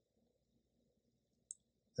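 Near silence: room tone, with one brief faint click about one and a half seconds in.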